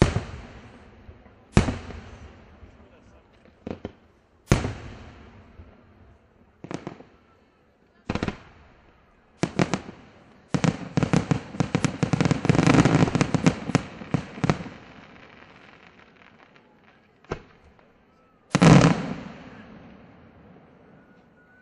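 Aerial firework shells bursting, with sharp bangs every second or two. In the middle comes a dense, rapid volley of reports lasting about four seconds, and near the end one loud bang.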